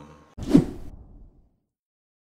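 A single whoosh transition sound effect: a sudden loud swish about half a second in that fades out over about a second.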